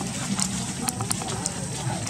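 Background chatter of people's voices, with a few short sharp clicks around the middle.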